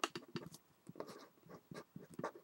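Faint, irregular scratches and taps of a pen writing out an algebraic expression.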